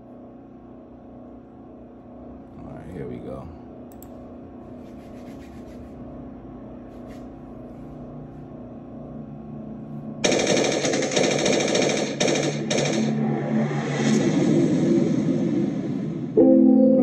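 Quiet, steady low held tones, then about ten seconds in a sudden long spell of rapid automatic gunfire: a staged sound effect in the intro of a music video. Low notes begin under the gunfire near the end.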